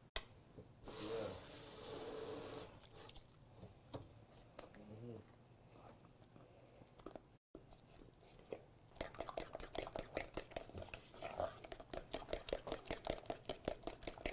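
Flour batter being stirred by hand in a hammered copper bowl, the utensil knocking and scraping quickly against the metal, strongest in the last few seconds. A brief hiss comes about a second in.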